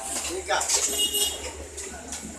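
Stainless-steel tea can and vessels clanking as they are handled, with a brief metallic ring about a second in.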